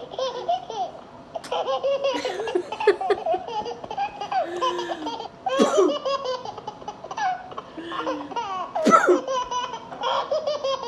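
A woman laughing hard in high-pitched, broken runs of laughter, with two louder, sharper bursts about halfway through and near the end.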